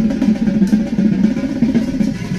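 Marching drumline playing a fast, dense passage on tenor drums (quads), with bass drums underneath.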